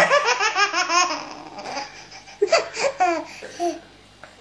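A baby laughing hard in quick, breathy bursts of giggles. The laughter fades after about a second, breaks out again in a second run past the halfway point, and dies away just before the end.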